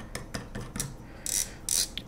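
The metal film advance dial of a Mamiya Six Automat folding camera being spun clockwise by hand as it screws back onto the body: an irregular run of small ratcheting clicks, then two short scraping sounds in the second half.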